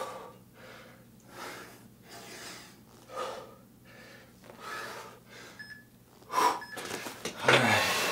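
A man breathing hard from the effort of push-ups, one breath about every second, the breaths growing louder near the end. The breathing closes with a short voiced sigh.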